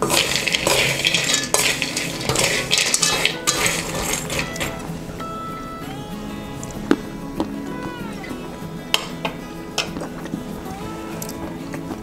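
A metal spoon scraping and stirring roasted peanuts in a steel pan, the nuts rattling against the metal, for the first few seconds. After that only a few clicks as a hand turns the nuts over, under light background music.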